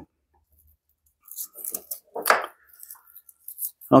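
A curled wood plane shaving crinkling and rustling as it is handled between the fingers, in short scattered bursts starting about a second in.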